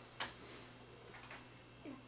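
Quiet room tone with a low steady hum, broken by one sharp click shortly after the start and a few fainter ticks.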